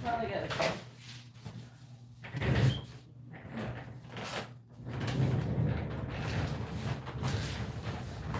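Irregular knocks and rustling as a person rummages for something away from the microphone, with a faint off-mic voice near the start.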